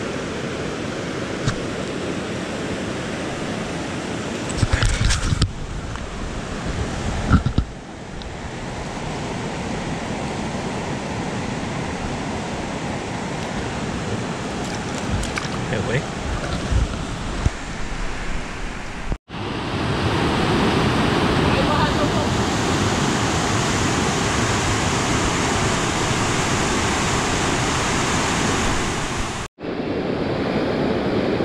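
Steady rush of a rocky mountain river's rapids, with a few knocks of handling about five and seven seconds in. After a brief break a little past the middle, the rush is louder and hissier.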